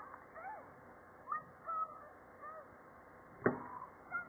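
Cartoon soundtrack playing through laptop speakers: a few short chirps gliding up and down in pitch, then a single sharp knock about three and a half seconds in.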